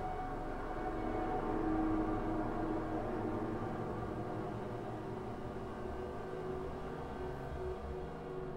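Background music: sustained, slowly shifting drone-like tones with no beat.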